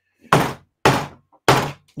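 Three hard knocks about half a second apart: a rubbery LJN wrestling action figure banged on a desk like a hammer.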